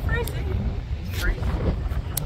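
Strong wind buffeting the microphone, a heavy unsteady low rumble, with a voice speaking in short snatches over it.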